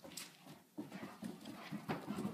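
A dog's feet hurrying across the floor and down the stairs: a quick, irregular run of light footfalls and claw taps.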